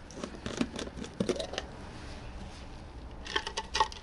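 Screw-on metal lid being twisted off a plastic jar: a run of scraping clicks from the threads through the first second and a half. A few sharper, slightly ringing clinks come near the end as the differential is hooked out of the jar.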